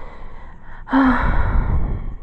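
A woman's long breathy sigh close to the microphone, starting about a second in with a brief voiced onset and trailing off as a rush of breath.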